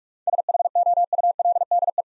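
Morse code sent at 45 words per minute: a single steady beep tone keyed in rapid dots and dashes, spelling out the word "shoulder".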